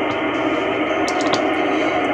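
Receive audio from an Icom IC-9700 on the AO-91 FM satellite downlink: steady, hissy static with faint, garbled voices under it, with the muffled sound of audio through a transceiver speaker. A few light clicks come about a second in.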